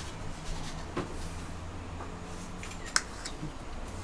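Small clicks and taps of a metal spoon on a steel bowl as curry-potato filling is scooped. One sharper click comes about three seconds in, over a low steady hum.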